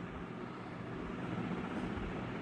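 Steady background noise, an even hiss with no distinct events or tones.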